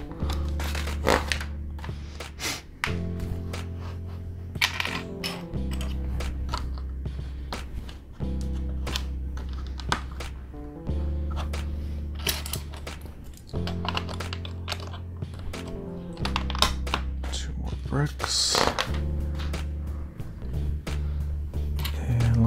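Background music of sustained low chords that change about every two and a half seconds. Over it, plastic LEGO bricks click and clatter now and then as they are handled and pressed together.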